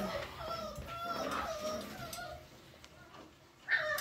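Cocker spaniel puppy whimpering in a string of high, wavering squeaks over the first couple of seconds, then a louder cry just before the end.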